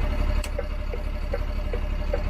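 A lorry's engine idling with a steady low rumble from inside the cab, while the turn indicator ticks about two or three times a second in an alternating tick-tock. A single sharp click sounds about half a second in.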